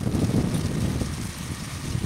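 Wind buffeting the microphone: an uneven low rumble with no steady tone.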